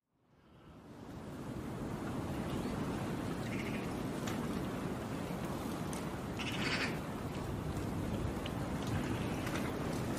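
Wind blowing through bare trees, a steady rushing that fades in during the first second, with short bird calls about three and a half and six and a half seconds in.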